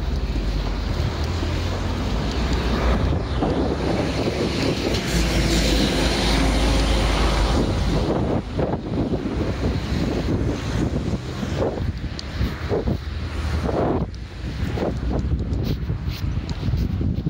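Wind buffeting the camera's microphone: a heavy, low rumbling noise, strongest from about four to eight seconds in, with a few short knocks in the second half.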